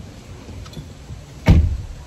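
A car door shuts with a single heavy thump about one and a half seconds in, heard from inside the cabin over the low steady rumble of the car.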